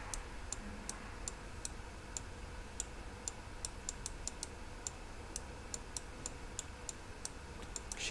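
Faint, irregularly spaced light clicks, sometimes several in quick succession, from the drawing input used to write character strokes on a computer, over a low steady room hum.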